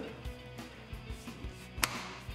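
Rider's seat of a BMW R nineT pressed down and pushed forward until its locking mechanism catches: one sharp click near the end, the sign that the seat is locked in place. Background music plays throughout.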